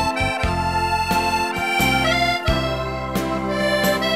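Organetto (diatonic button accordion) playing a slow waltz melody over held chords and low bass notes, the melody notes changing every half second or so.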